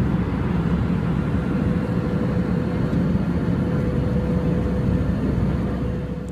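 Steady drone of an airliner cabin in flight, the engines and rushing air running evenly with a faint constant hum on top. It drops away at the very end.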